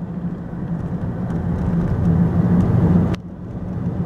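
Engine and road noise of a moving car heard from inside the cabin: a steady low hum that builds in loudness, then drops off abruptly a little after three seconds in.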